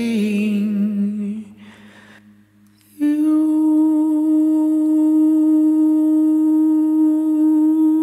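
A male voice sings the end of a phrase with vibrato over a backing track, then fades into a brief near-quiet gap. About three seconds in, one long, steady vocal note begins and is held.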